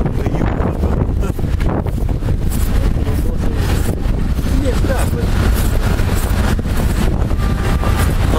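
Steady low rumble of wind and rubbing on the microphone of a camera carried against clothing, with scraping knocks throughout and muffled voices underneath.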